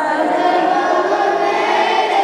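A group of voices singing a devotional Urdu song together in chorus.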